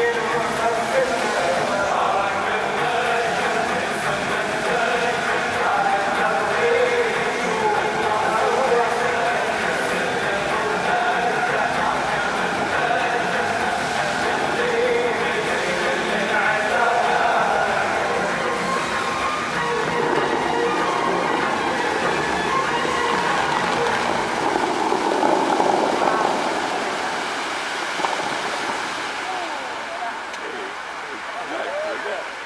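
Music from the Dubai Fountain show's loudspeakers plays with the fountain running. About twenty seconds in the music gives way to a rushing noise that swells and then dies down near the end as the show's jets fall away.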